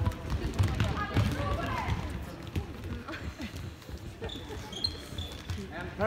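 Futsal ball being kicked and bouncing on a hard sports-hall floor, with players' running footsteps and shouting voices; a brief high squeak comes about four to five seconds in.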